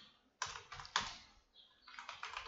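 Computer keyboard keystrokes: a couple of clicks about half a second in and another at about one second, then a faster run of typing starting at the very end.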